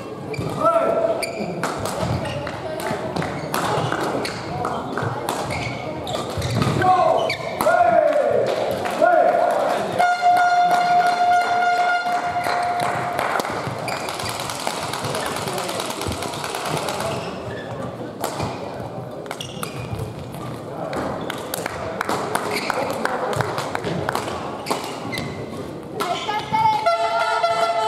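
Badminton play in a large echoing sports hall: sharp racket strikes on the shuttlecock and squeaking shoes on the court floor, with voices in the hall.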